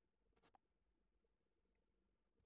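Near silence, with one faint brief rustle about half a second in.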